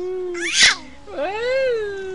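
Baby squealing with laughter: a long held squeal, then a short breathy shriek about half a second in, the loudest moment, then another drawn-out squeal that rises and falls in pitch.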